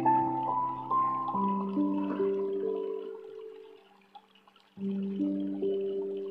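Gentle instrumental background music of sustained, ringing notes. One phrase steps upward and then fades away about four seconds in, and a new phrase starts with a low chord about a second later.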